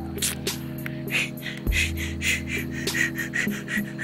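Background music: held bass notes that change about a second and a half in, with a quick beat of short high strokes over them.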